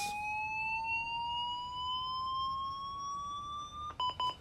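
Defibrillator charging to 360 joules: one steady electronic tone rising slowly in pitch, stopping abruptly near the end as it reaches full charge.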